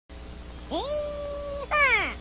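A single long meow-like call. It rises, holds one steady pitch for about a second, then slides down in pitch near the end, where it is loudest.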